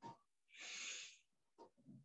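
A single faint breath drawn audibly through the nose, a soft hiss lasting about three-quarters of a second, with a small click just before it.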